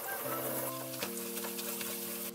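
Cold tap water running onto buckwheat noodles in a stainless steel mesh colander as a hand rinses them. Soft background music of held chords plays over it, changing about a quarter second in and again about a second in.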